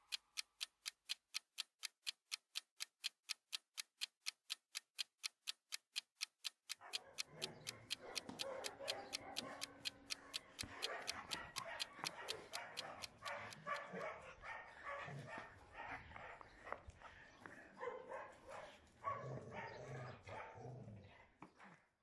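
Steady ticking, about three ticks a second, at first on its own. From about seven seconds in, faint barking and yelping of many dogs at once joins it and carries on after the ticking stops, around fourteen seconds in.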